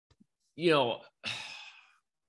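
A man breathes out in an audible sigh, a breathy rush that fades away over about three quarters of a second, following a brief spoken phrase.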